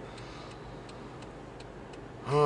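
Faint, light ticking repeating every fraction of a second in a car's cabin, over a low steady hum.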